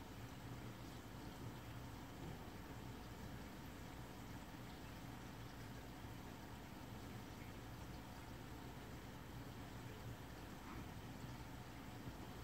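Faint, steady hum and watery hiss of a running reef aquarium's circulation equipment, with no distinct events.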